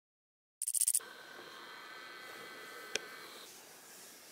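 Silence, then a brief hissy burst about half a second in, followed by faint steady room noise with a thin high whine and a single sharp click near three seconds.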